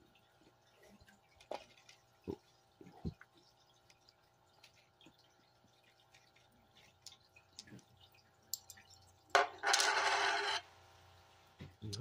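A few faint small clicks of coins and pebbles being handled. Near the end comes a loud rush of splashing water, about a second long, in the panning tub.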